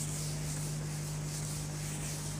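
Whiteboard being rubbed clean by hand, a dry hissing wipe that swells and fades in back-and-forth strokes about twice a second.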